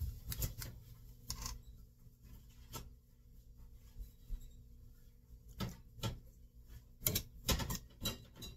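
Several light, sharp clicks and knocks scattered at irregular intervals as a vanilla extract bottle is handled and poured over a glass mixing bowl, over a low steady hum.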